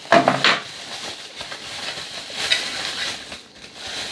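Bubble-wrap packaging crinkling and rustling as it is handled and opened, an uneven crackling that comes and goes.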